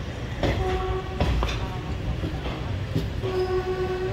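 Train horn sounding two steady blasts: a short one about half a second in and a longer one starting near the end. Under them run the low rumble and scattered wheel clicks of a moving train on the rails.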